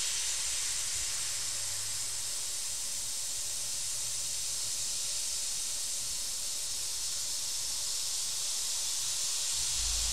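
Airbrush spraying paint: a steady hiss of air from the nozzle, growing a little louder near the end.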